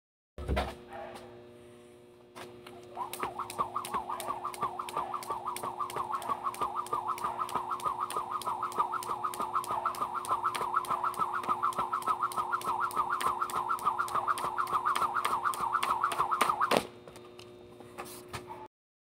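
A jump rope turning in a fast, even rhythm, each turn whirring and striking the ground. It starts a couple of seconds in after a single knock and stops suddenly near the end.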